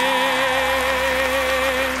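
A singer holding a long final note with vibrato over sustained backing music at the close of a song; the note stops near the end.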